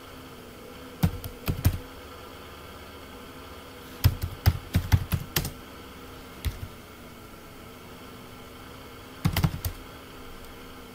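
Computer keyboard typing in short bursts of keystrokes with pauses between: a few keys about a second in, a quicker run from about four to five and a half seconds, a single key a little later, and another short run near the end. A faint steady hum lies underneath.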